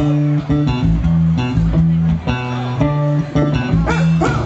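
Live ska band playing the opening of a song, with electric guitar and bass to the fore over the band.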